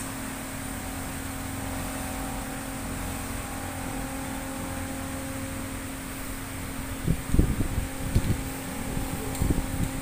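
Steady machine hum with a constant low tone, like a fan running. In the last three seconds a run of irregular low bumps and knocks, the loudest sounds here, comes over it.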